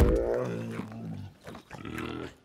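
A cartoon panda's drawn-out low growl, starting loud and fading over about a second.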